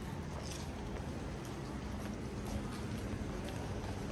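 Footsteps on pavement, about one a second, over a steady low hum of street ambience.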